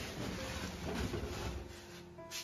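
Rustling and handling noise as household items are shifted about beside a plastic barrel, fading out near the end.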